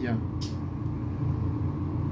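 A steady low rumble, with a brief hiss about half a second in.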